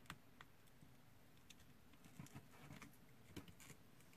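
Faint, scattered small clicks and rustles of wires and a small circuit board being handled while a wire is soldered to the board.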